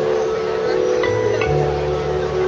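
Grand piano playing the opening of a song, sustained chord tones ringing on. A low bass note comes in about one and a half seconds in.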